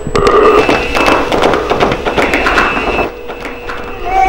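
An electric bell ringing with a rapid, continuous clatter, cutting off about three seconds in.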